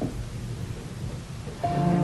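Low hiss and rumble, then background music comes in about one and a half seconds in with sustained held notes, clearly louder.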